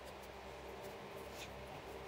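Faint rustling of fingers pressing and rubbing a freshly glued paper strip onto card, with a few soft ticks and a light scrape partway through.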